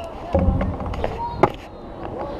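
Stunt scooter wheels rolling over concrete with a low rumble, and one sharp clack about a second and a half in.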